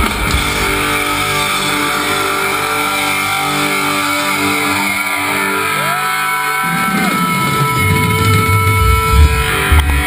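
Live thrash metal band heard loud from the front row: distorted electric guitars hold long sustained notes with a note bending upward about halfway through, then heavy low drum and bass hits come back in during the second half.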